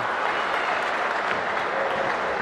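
Steady crowd noise from a boxing arena audience: an even hubbub of many voices and clapping, with no single loud event.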